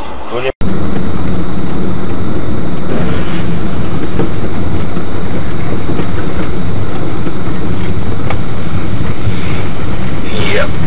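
Loud, steady running noise of a moving vehicle, a constant drone heavy in the low end with a few faint clicks, starting abruptly about half a second in.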